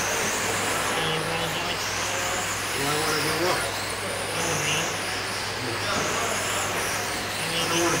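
1/10-scale RC dirt-oval sprint cars racing, their motors giving a high whine that rises and falls again about every two seconds as they lap the oval.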